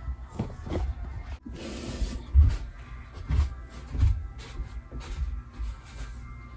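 Clothes being handled and dropped onto a shelf close to the microphone: fabric rustling and a run of irregular soft thumps.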